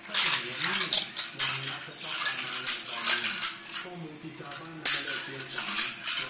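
Small plastic toy car rattled and scraped back and forth on a hard tiled floor: a busy, uneven clatter of plastic on tile.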